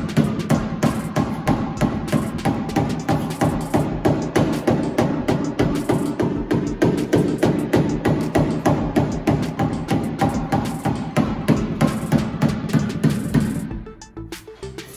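Background music with a steady, fast drum beat over held notes, cutting off abruptly at the end.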